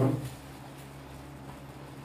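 Quiet room with a steady low hum, and a brief dull knock right at the start.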